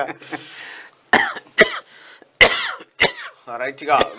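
A man coughing and clearing his throat, with a breathy rasp near the start followed by four short, sharp coughs.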